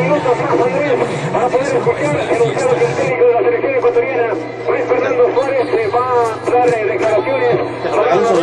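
Radio broadcast audio of several men's voices talking over one another, too tangled to make out words, over a steady low hum.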